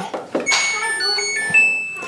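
A short electronic tune of beeps stepping between pitches from a front-loading washing machine's control panel, after a brief thunk.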